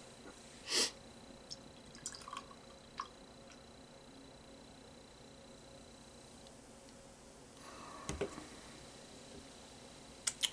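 Canned imperial stout being poured into a stemmed glass, a faint liquid pour with a thin, fizzy sound that the reviewer takes as a bad sign for the beer's body. A brief hiss comes about a second in, and a soft knock near the end as the empty can is set down on the table.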